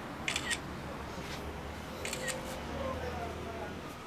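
Camera shutter firing twice, about two seconds apart, each shot a quick double click, over a steady low rumble.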